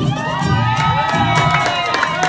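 Audience cheering and whooping in many high voices at once, over background music.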